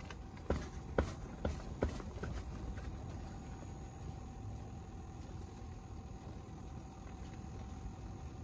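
A few light knocks and taps in the first two seconds, then a steady faint hum with one thin, even tone.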